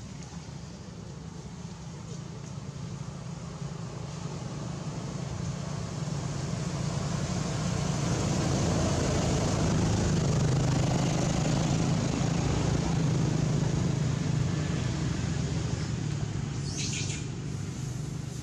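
A low, steady engine rumble of a passing motor vehicle, building slowly to a peak midway and fading again. A few short high chirps come in near the end.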